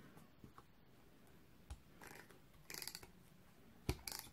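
Quiet handling of a small piece of paper card: a few faint ticks, a short papery rustle about three seconds in, and a sharp click near the end.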